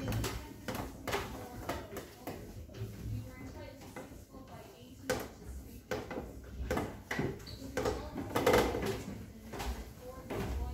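Indistinct voices in a room, with scattered knocks and clatter throughout and a louder burst about eight and a half seconds in.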